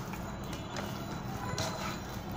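Hand squeezing and mixing mashed potato in a steel bowl: soft squishing with a few light knocks against the bowl, over steady background music.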